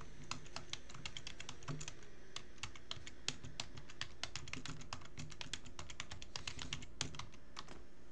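Typing on a computer keyboard: a run of irregular key clicks, several a second, over a low steady hum, stopping near the end.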